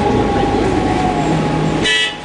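Cabin sound of an Orion VII Next Generation hybrid bus under way: steady low rumble with a held whine from the hybrid electric drive. Near the end a short high-pitched tone sounds briefly.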